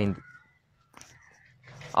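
A man's speech breaks off into a mostly quiet pause, with one faint short click about a second in, before he starts talking again at the end.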